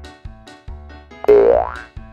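Bouncy background music with plucked notes over a bass pulse. A bit past halfway, a loud cartoon 'boing' sound effect dips and then springs upward in pitch.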